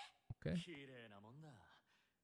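Speech only: a short spoken phrase, "okay", preceded by a brief click.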